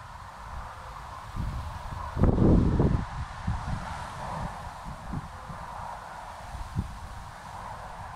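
Wind buffeting a dog-mounted GoPro's microphone in irregular low gusts, loudest about two seconds in, over a steady rustle of tall dry grass.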